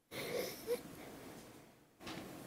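Faint meeting-room noise on the microphone feed, cutting in suddenly from silence, with a brief short sound under a second in.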